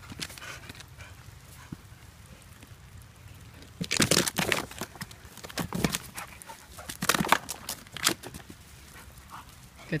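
A puppy barking in short bursts, four groups of barks in the second half.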